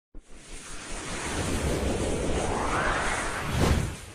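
Animated-logo intro sound effect: a rumbling noise swell that rises in pitch and ends in a whoosh near the end.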